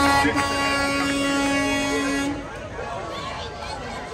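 A vehicle horn held in one long steady note that cuts off a little over two seconds in, with voices around it.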